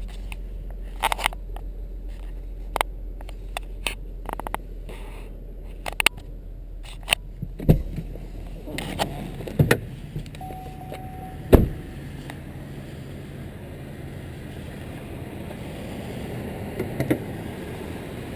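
The 3.6-litre V6 of a 2008 Buick Enclave idling smoothly and quietly, first heard from inside the cabin and then from outside. Over it come scattered clicks and knocks of the door and handling, with two loud knocks about eight and twelve seconds in and a brief beep between them.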